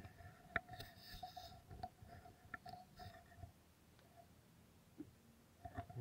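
Near silence: faint outdoor background with a few soft clicks, the sharpest about half a second in, and a faint thin tone during the first half.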